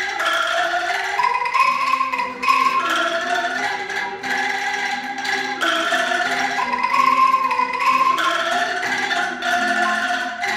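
Angklung ensemble playing a melody with chords, the shaken bamboo tubes giving sustained rattling notes, with a violin playing along.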